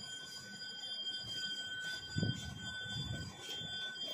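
Hands rustling and handling a padded fabric flute bag and its open zip compartment, loudest about two seconds in. A steady high-pitched whine, broken briefly now and then, runs underneath.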